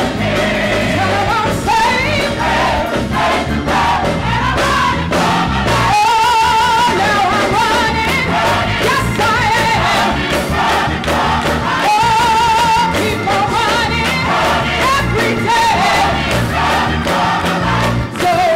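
Gospel choir singing with a female lead vocalist over live instrumental backing; the lead's sustained notes waver with a strong vibrato.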